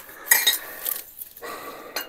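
Glass tumblers clinking against each other as they are handled among the rubbish, one sharp ringing clink about a third of a second in, followed by rustling of the rubbish.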